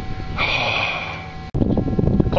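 A person's long breathy exhale, lasting about a second, over a steady low rumble on the microphone, with a sudden break near the end.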